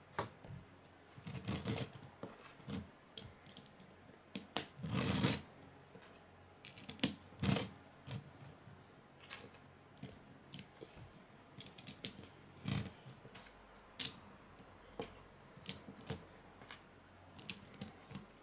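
Plastic Lego bricks clicking as small pieces are handled and pressed onto a toy truck's chassis: irregular sharp clicks with a few short rustling scrapes.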